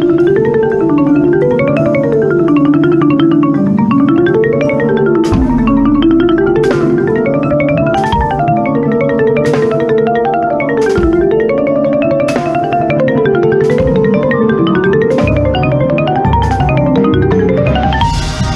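Marimba played close up with four yarn mallets in fast arpeggiated runs that climb and fall over and over, over a sustained bass. From about five seconds in, sharp accented hits land about every one and a half seconds.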